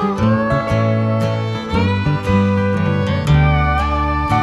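Instrumental break in a folk song: a fiddle plays the melody with sliding notes over a steadily strummed acoustic guitar.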